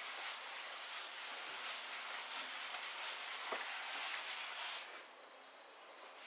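Terry cloth rubbing flaxseed oil into a teak tabletop: a steady rubbing hiss that stops about five seconds in.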